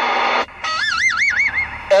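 Radio hiss with a low hum, then a high warbling tone over a CB radio that wavers about five times a second for just over a second.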